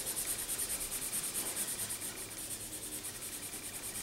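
A highlighter marker scribbled back and forth on paper in quick, even strokes, its felt tip rubbing across the sheet as hair is colored in.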